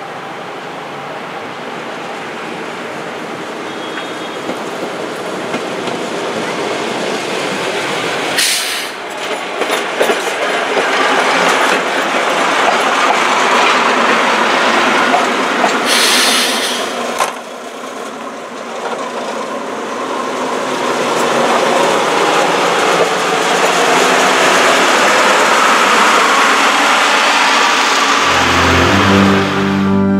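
Brohltalbahn narrow-gauge diesel railcar approaching along the track, its engine and wheels on the rails growing louder over the first ten seconds and staying loud as it draws near. A brass music sting comes in near the end.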